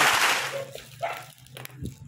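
Packaging being handled during an unboxing: a loud rustle of the wrapping dies away in the first half second, followed by quieter handling noises with a few light knocks.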